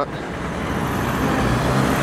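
Steady city street traffic noise, a constant hum of passing vehicles.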